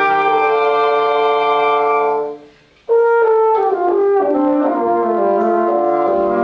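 Woodwind quintet of flute, oboe, clarinet, French horn and bassoon playing a sustained chord that dies away about two seconds in. After a short pause the ensemble comes back in together with moving notes.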